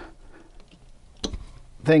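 Faint handling noises and one sharp click as a field cable is worked loose from a terminal post on a starter/generator.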